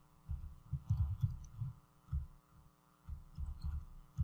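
Soft, irregular low thumps over a steady electrical hum.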